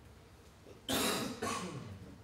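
A man coughs twice, about a second in, the two coughs half a second apart.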